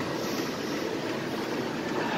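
Steady, even hum and hiss of a gym, with a Life Fitness exercise bike being pedalled.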